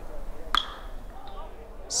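Metal baseball bat striking a pitched ball about half a second in: a single sharp ping with a brief ring. The contact sends up a fly ball to right field.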